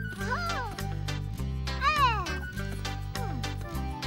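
Children's cartoon background music with a steady plucked beat. Over it, a squeaky, voice-like cartoon sound glides up and down, once about half a second in and again, louder, about two seconds in.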